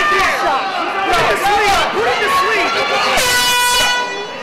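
Men shouting over the fight, then about three seconds in a single steady horn blast sounds for under a second and cuts off: the signal ending the round.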